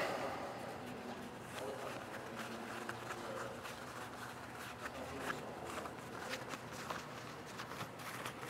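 Faint handling sounds as the awning's fabric pull strap is rolled up by hand, with scattered light ticks over a low steady hum.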